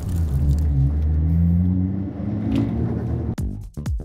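Toyota Mark II JZX100's turbocharged 1JZ-GTE straight-six running steadily under background music, heard from inside the cabin. About three and a half seconds in, the sound cuts to electronic dance music with a heavy kick-drum beat.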